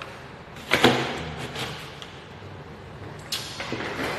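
Handling noise close to a phone's microphone: a loud knock and rustle just under a second in, then a sharp knock with a short scrape near the end, as things are moved around.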